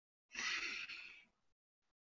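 A woman's audible intake of breath, lasting under a second, a breathy rush without voice.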